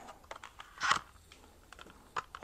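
Plastic packaging of a small parts kit being handled and opened: a few faint clicks and one brief crinkle about a second in.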